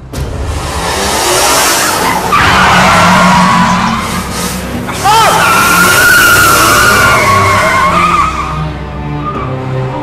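Car tyres squealing in a long skid that starts suddenly, with two louder surges of squeal about two and five seconds in, fading near the end. Film music continues underneath.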